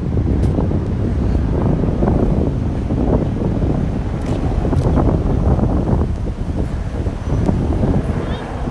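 Wind buffeting the microphone: a loud, low rumble that gusts up and down, dipping briefly near the end.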